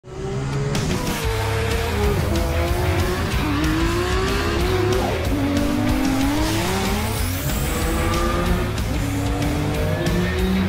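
A car's engine revving and its tyres squealing as it slides, mixed with loud rock music with a steady beat.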